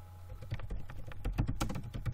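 Computer keyboard typing: a quick run of key clicks starting about half a second in as a short phrase is typed, over a low steady hum.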